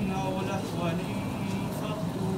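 A man's voice reciting in a melodic chant, holding and gliding between notes.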